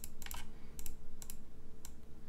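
Several light, irregular clicks from computer input: mouse and keyboard clicking, about seven in two seconds.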